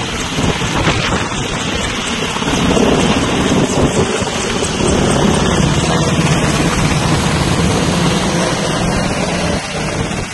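Sikorsky UH-60 Black Hawk military helicopter passing low overhead, its rotor and engines loud and steady. It grows louder a few seconds in and eases slightly near the end.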